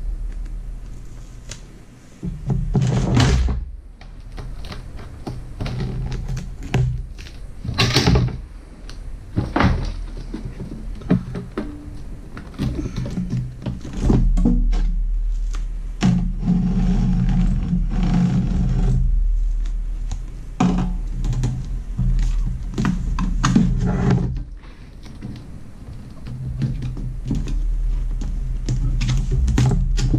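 Handling noise as an insulation sheet is pushed and worked into a Black and Decker toaster oven's metal body: irregular rustling, scraping and knocks, the loudest about three and eight seconds in.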